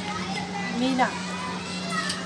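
Background voices, faint talk and calls of people and children, over a steady low hum.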